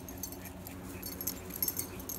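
Faint, irregular metallic jingling of dog collar tags as two small dogs wrestle and play, over a faint steady hum.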